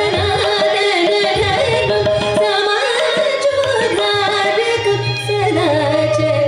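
Two female voices singing a Carnatic composition in raga Behag, accompanied by violin and mridangam strokes.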